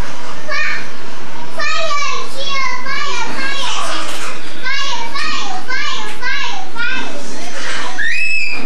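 A young child talking in a high voice, in quick short phrases, with no engine or other machine sound.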